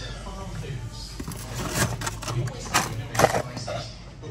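Indistinct talking in a shop, with several short sharp knocks and clatters in the second half, the loudest about three seconds in.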